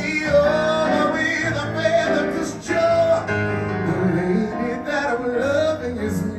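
A solo singer belting a show tune through a handheld microphone and PA speakers, holding long notes that bend and waver, over instrumental backing music.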